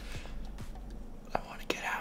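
Soft breathy, whisper-like voice sounds from a person, with two sharp clicks in the second half; a low hum under them cuts off about halfway through.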